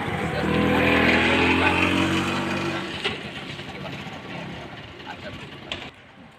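A motor vehicle passing close by: engine and tyre noise swell to a peak about a second in, then fade away over the next few seconds.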